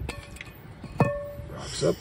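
A rubber mallet striking a wooden block laid over a new axle seal, driving the seal into a trailer brake drum's hub: two blows about a second apart, the metal drum ringing briefly after the second.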